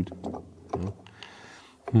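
A few light clicks and soft rubbing as a burnt-out brushed motor from a cordless drill is handled and prodded at its scorched plastic brush holder.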